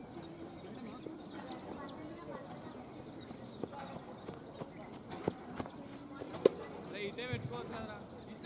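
Open-air ambience of distant voices, with a high chirp repeating about three times a second and a few sharp knocks, the loudest about six and a half seconds in.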